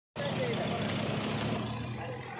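A car engine running steadily at idle, with people talking in the background. The sound cuts in abruptly just after the start.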